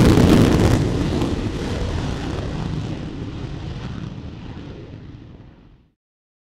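Jet aircraft noise, loudest at the start and fading steadily until it stops just before the end.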